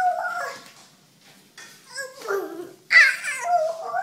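A toddler's high-pitched wordless yells and squeals in a series of short cries, the loudest starting sharply about three seconds in.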